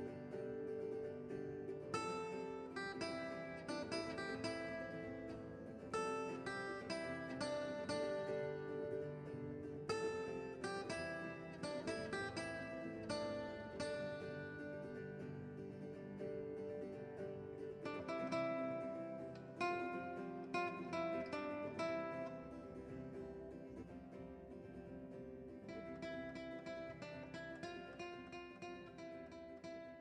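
Background acoustic guitar music: a run of plucked notes that fades out near the end.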